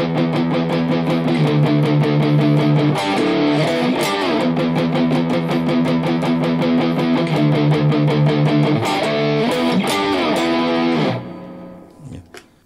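Cort G250 SE electric guitar played with overdrive, its pickup switched to the single-coil setting: a quickly picked riff of sustained notes with string bends, stopping about eleven seconds in.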